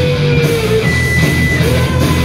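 Punk rock band playing live and loud, with electric guitars over a steady bass and rhythm section and a long held note running through the chords.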